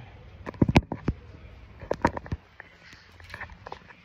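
Handling noise from bedsheets gathered against the phone: two clusters of sharp clicks and knocks, about half a second in and again about two seconds in, then a few lighter ticks and cloth rustle.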